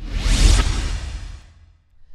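A whoosh sound effect with a deep low rumble under it, starting suddenly, swelling for about half a second and fading out within about a second and a half, as a logo-reveal sting.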